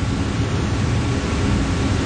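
Steady hiss with a low rumble underneath, the background noise of a TV studio recording, heard in a pause in speech.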